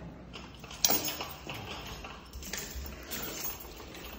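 An apartment front door being opened: a sharp click of the lock or latch about a second in, followed by a few fainter knocks and rattles of the door.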